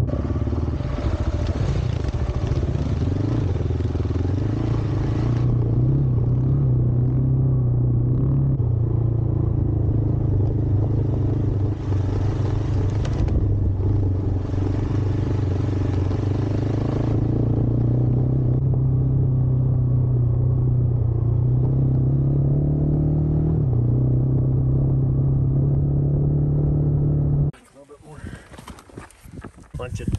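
Single-cylinder Husqvarna 701 adventure motorcycle engine running under throttle on a dirt trail, its pitch stepping up and down as the rider changes speed and gears. The engine sound cuts off suddenly near the end.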